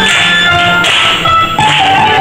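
Violin playing a melody in held, changing notes, with people clapping along in time.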